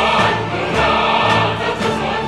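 Choir singing a North Korean reunification song over orchestral accompaniment, with a steady pulse in the bass.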